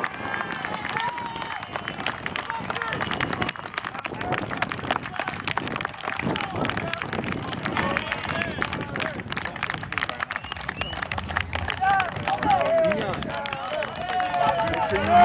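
Outdoor clapping from people lining a field, many scattered claps that continue throughout, mixed with indistinct voices chatting near the microphone.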